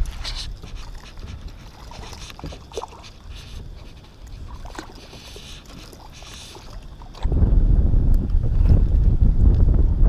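A small whiting hooked on a topwater lure skittering and splashing at the water's surface as it is drawn to a kayak, heard as light scattered splashes and ticks. About seven seconds in, loud low wind rumble on the microphone starts suddenly and covers everything.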